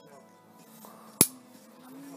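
A single sharp click a little past a second in, over faint background music.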